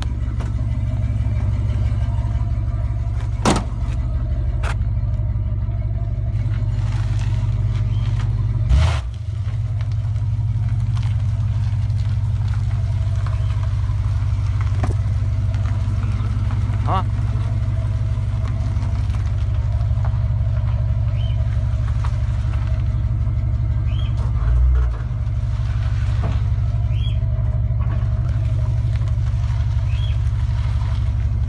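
1972 Dodge Charger's engine idling steadily with a loud, low pulsing note, heard from beside the car. A couple of sharp knocks sound about three and a half and nine seconds in.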